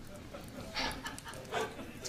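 Quiet breathy huffs from a person, twice about half a second apart, over low murmured voices.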